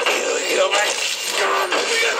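Film soundtrack played back on a television: shouted dialogue over background music.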